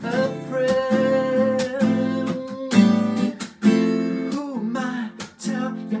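Acoustic guitar strummed in a steady rhythm, with a man singing over it and holding a long note in the first half.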